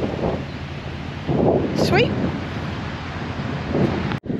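Wind buffeting the microphone as a steady rushing noise, with a short exclaimed "Sweet!" about halfway through.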